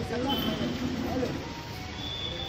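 A group of men chanting a slogan in the street over traffic noise; the voices stop a little over a second in, leaving the steady traffic hum.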